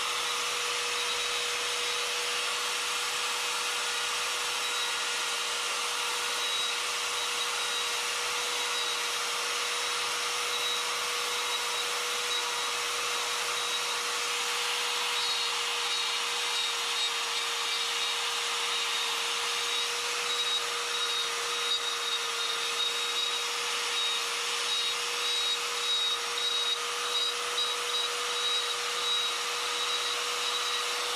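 Electric die grinder running at a steady high whine with a Saburrtooth flame burr grinding into poplar to carve out an eyelid. The cutting noise rises and falls unevenly in the second half as the bit bites in and eases off.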